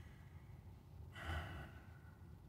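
A man's single audible breath, a short breathy rush about a second in, during a pause in his talk.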